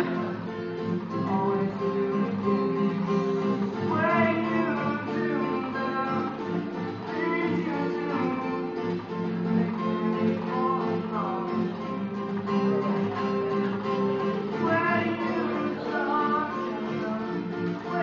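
Acoustic guitar strummed and picked with a man singing over it in phrases, heard live from across a large hall.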